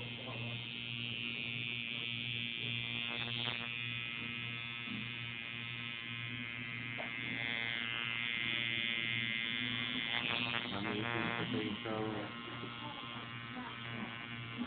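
Electric tattoo machine buzzing steadily as its needle runs, a constant low hum with many overtones.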